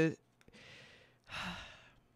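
A woman's breath at a close microphone while she pauses mid-sentence: a faint breath, then a louder sigh about a second and a half in.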